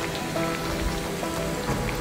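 Lentil vadas deep-frying in hot oil in a steel kadai: a steady, even sizzle. Faint background music plays under it.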